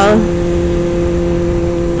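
Motorcycle engine running at a steady cruise, a hum of constant pitch over low rumble from wind and road.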